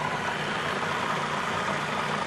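Food processor motor running steadily, blending a liquid sauce of herbs, garlic and olive oil.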